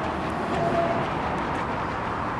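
Steady outdoor background noise with a low rumble.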